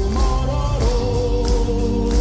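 Power metal band playing live, the singer holding long notes that glide to a new pitch now and then over the drums and keyboards, with a choir-like vocal layer.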